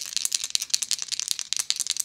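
Several plastic dice rattling rapidly as they are shaken for a roll, a quick run of small clicks.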